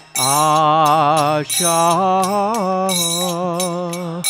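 A man singing a Bengali devotional bhajan in long, wavering held notes, with a short break for breath midway. He keeps time on small hand cymbals (kartals) that ring out in a steady beat of about two strokes a second.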